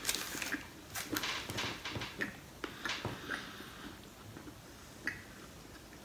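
A person chewing a mouthful of a bread sandwich with grilled zucchini, with irregular wet mouth clicks and smacks. They come thickly through the first half and thin out after about three and a half seconds.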